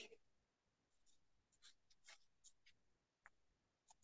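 Near silence, with about half a dozen very faint, scattered short clicks or ticks.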